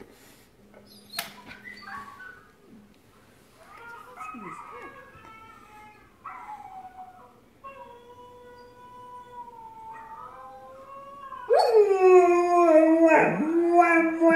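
A German shepherd howling: softer, wavering howls and whines through the first part, then a loud, long howl from about two-thirds of the way through that dips in pitch at the start and then holds one note.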